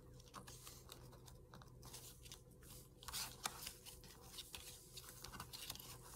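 Faint handling of paper and twine: soft rustles and small clicks as twine is threaded under a layered paper embellishment, with a slightly louder rustle about three seconds in.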